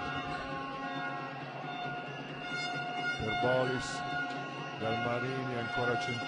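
Basketball arena ambience: music with sustained held tones plays throughout, and voices rise and fall over it around the middle and again near the end.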